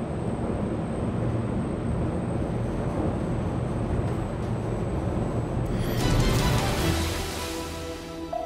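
A performance motor yacht running at speed: a steady rumble of engines and rushing water. About six seconds in, a rising whoosh leads into a short music sting.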